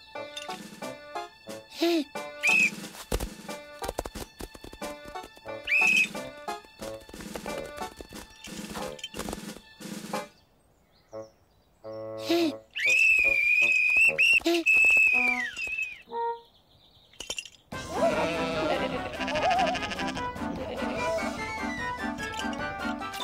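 Cartoon background music, broken about halfway by one long blast on a metal coach's whistle that holds a steady shrill tone for about three seconds and drops off at the end; the music then carries on.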